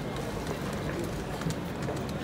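Night-time city street ambience: a steady low rumble with faint voices of passers-by and a few light clicks.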